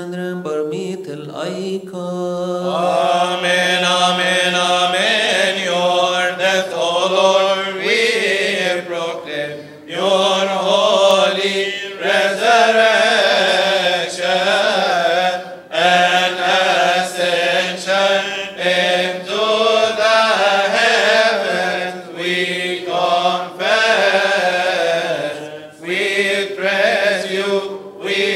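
Coptic Orthodox liturgical hymn chanted by men: a long, winding melody over one low note held steadily beneath it, with a few brief pauses for breath.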